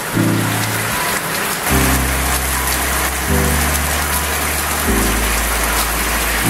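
Shower water spraying steadily, over background music of sustained low chords that change about every second and a half.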